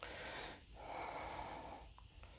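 A person breathing close to the microphone: two breaths, the second longer.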